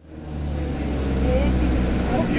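Tour coach engine running, a steady low hum heard from inside the cabin, fading in over the first half-second.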